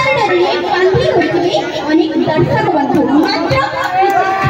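Speech: a woman talking into a handheld microphone, with chatter in the background.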